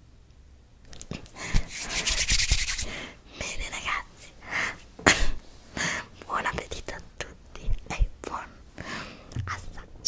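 Close-miked whispering and breathy mouth sounds. About a second in there is a loud, noisy rush lasting about two seconds, followed by a string of short whispered bursts.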